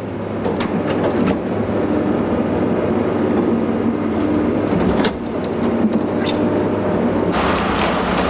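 A heavy construction machine's engine running with a steady low hum while it pries up broken pavement slabs, with a few sharp knocks. A broader rushing noise joins near the end.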